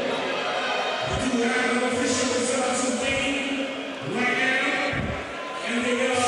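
Men's voices talking over a background of crowd noise in an arena.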